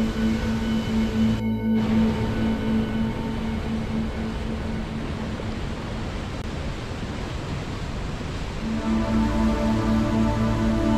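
Slow ambient music of long held tones over the steady rush of a river. The music fades out about three seconds in, leaving only the rushing water, and comes back near the end. The water noise drops out for a moment about a second and a half in.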